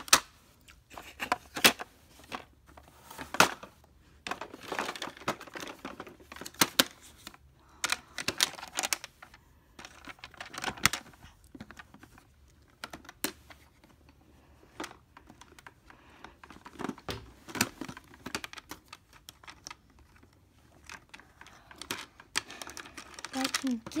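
Handling noise from plastic doll toys being moved about: irregular clicks, taps and knocks with some rustling.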